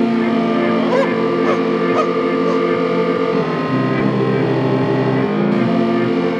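Live electronic music: a sustained synthesizer chord, with faint clicks every half second in the first half, changing to a new chord a little past halfway.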